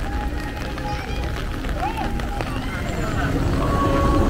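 Crowd voices and chatter over a steady low rumble, growing a little louder near the end.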